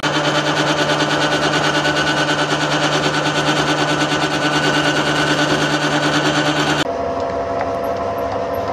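Metal lathe running, its chuck spinning as it turns a steel chain sprocket: a steady machine whir with a fast, even flutter. Near the end it drops to a quieter, lower running sound.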